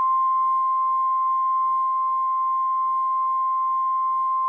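A single steady electronic tone, like a test-tone beep, held at one unchanging pitch.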